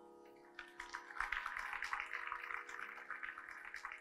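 Audience applause rising in about half a second in, a dense patter of many hands clapping, over a lingering steady instrumental drone as a classical vocal performance ends.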